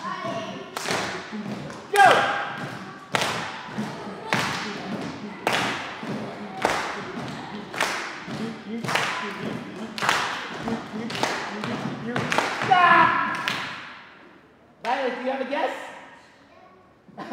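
A steady beat of thumps kept by a group, about one strong hit a second with lighter hits between, with brief voices over it; the beat stops about two seconds before the end and a short bit of speech follows.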